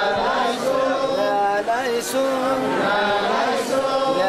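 A group of pilgrims chanting a hymn together in a slow chant, holding long notes with short slides between them.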